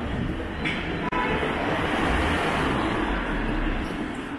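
Road traffic passing close by: a steady low rumble of engines and tyres, louder from about a second in.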